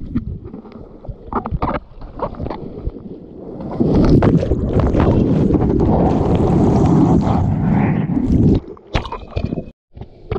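Seawater sloshing and splashing against a GoPro in the shorebreak. About four seconds in, a loud churning rush of breaking surf and whitewash rolls over the camera for about five seconds, then cuts off suddenly.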